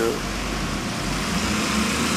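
Steady low engine rumble of a motor vehicle running amid street noise, after a last spoken syllable at the very start.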